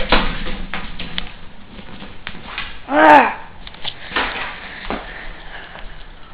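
Faint knocks and handling noise from a handheld camera being carried, with one short voiced sound from a person about halfway through, its pitch rising and then falling.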